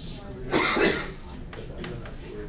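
A single cough, lasting about half a second, starting about half a second in and the loudest sound here, followed by light chalk strokes on a blackboard.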